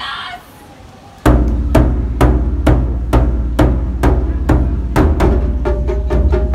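Large Japanese taiko drum struck with wooden sticks in a steady beat, starting about a second in: each stroke a sharp crack with a deep boom, about two strokes a second.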